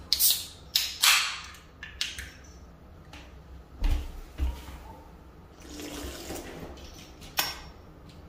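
Aluminium soda can being opened: a sharp crack and a short hiss of escaping carbonation, then fizzing. A few more short clicks and hisses follow over the next seconds.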